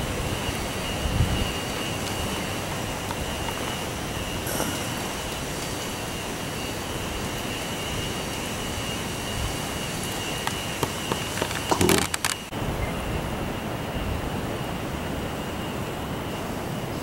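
Wind rumbling and hissing on the microphone, with a thin steady high tone under it and a brief cluster of clicks and knocks about twelve seconds in.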